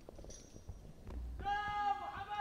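A few faint knocks, then about one and a half seconds in a single high-pitched voice calls out in a long, slightly wavering note.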